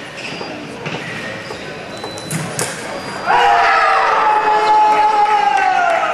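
Sharp knocks of fencers' footwork and blades, then from about three seconds in a fencer's long, loud shout held for about three seconds and slowly falling in pitch, as a touch is scored in a foil bout.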